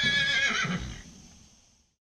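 A horse whinnying: one high, wavering call that is loudest at the start and fades away within the next second or so.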